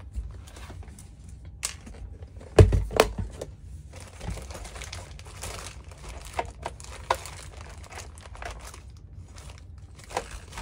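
Small plastic parts bags crinkling as they are rummaged through in a clear plastic parts case, with scattered clicks and taps. A loud thump comes about two and a half seconds in.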